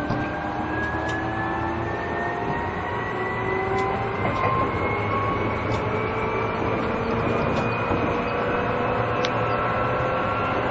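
Seibu New 2000 series electric train running under field-chopper control, its traction motor whine climbing slowly and steadily in pitch as the train gathers speed, over a steady running rumble. A faint high hiss from a recording fault lies over it.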